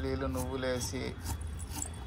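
A voice speaking for about the first second, then quieter light jingling of bangles on the wrists as the hands work a knife through cabbage.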